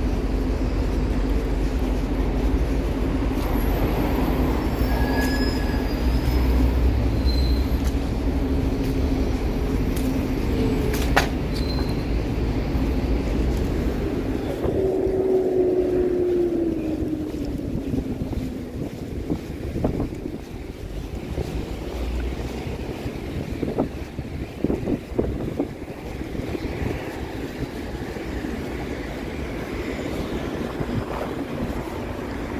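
Street traffic on a city avenue: a city bus's diesel engine rumbles close by for the first half, its drone falling in pitch as it draws away about halfway through. After that, lighter traffic noise with a few sharp knocks.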